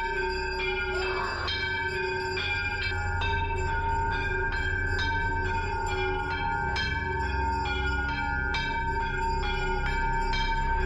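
Temple bells struck over and over, about two or three strokes a second, their rings overlapping into a continuous clangour over a low pulsing beat.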